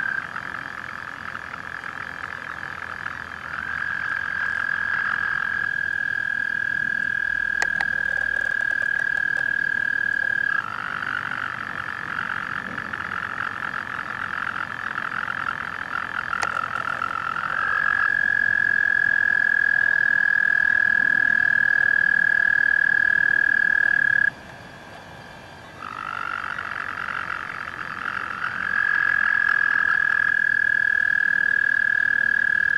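Male toads calling: long, steady, high-pitched trills lasting several seconds each, sometimes two overlapping, from a toad with its vocal sac blown up. The close trill breaks off briefly about 24 seconds in, then resumes.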